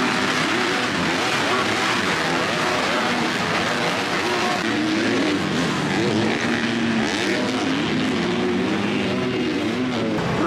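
A pack of 250cc four-stroke supercross bikes racing together, many engines revving up and down at once in overlapping, shifting pitches over a continuous din.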